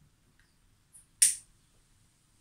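A handheld lighter being struck to relight a tobacco pipe: a faint click about a second in, then one sharp, louder click.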